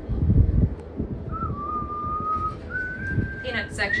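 A person whistling long held notes, each a step higher than the last, over a low rumble inside a moving gondola cabin. A brief voice cuts in near the end.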